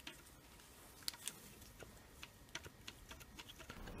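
Faint, irregular light clicks from a loose stator winding lead inside a Bosch alternator being wobbled. Its solder joint has broken, so the lead moves freely; this is taken to be the alternator's fault.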